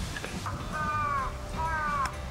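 A bird calling twice outdoors. Each call lasts about half a second and falls slightly in pitch, the first about two-thirds of a second in and the second near the end.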